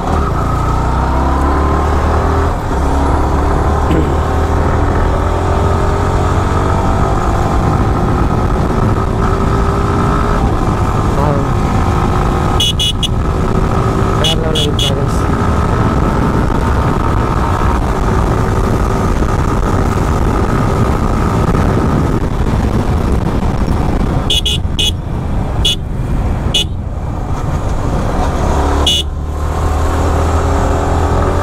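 Sport motorcycle engine running under way, its pitch rising with acceleration and dropping with gear changes and throttle-off, with wind rumble on the microphone. Short horn beeps come in a few small groups, around the middle and near the end.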